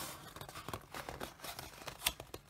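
Faint handling of a cardboard box: light rustling, scraping and a few small taps as its lid flap is lifted and folded back.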